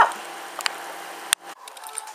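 Steady hum of kitchen background noise with a light click about halfway through. A little past a second and a half a sharp click cuts it off, and a quieter background follows.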